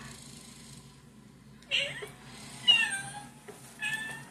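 Cat meowing: three short, high meows about a second apart, each falling in pitch, starting about halfway through.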